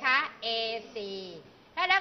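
Speech only: a voice speaking Thai, with a couple of syllables drawn out and held in the middle.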